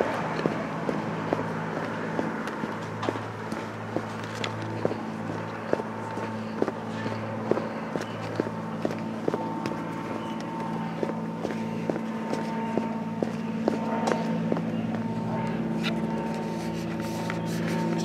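Footsteps of a person walking, about two steps a second, over a steady low hum.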